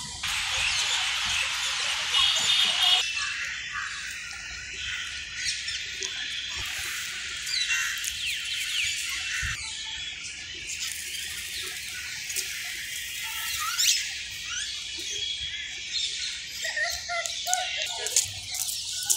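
Small birds chirping and calling in trees, many short rising and falling chirps. A louder rushing noise sits under them for the first three seconds.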